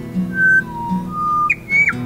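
Acoustic guitar music with a run of about five clear whistled notes over it, each held briefly and jumping in pitch, the last one falling away sharply near the end.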